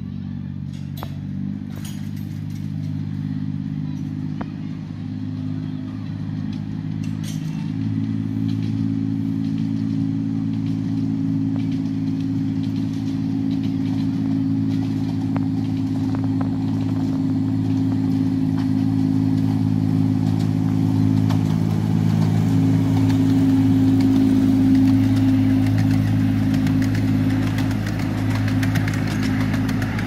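Alan Keef No. 54 "Densil", a 10¼-inch gauge diesel locomotive, running at a steady engine note while hauling a passenger train towards the listener, growing louder as it draws near and passes close by over the last few seconds.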